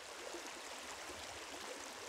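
Faint, steady rush of a small creek's flowing water.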